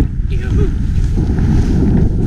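Wind buffeting the action camera's microphone during a ski run through powder, a loud steady low rumble, with the hiss of skis cutting through snow above it.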